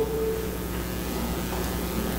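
Room tone: a steady low hum with a faint hiss.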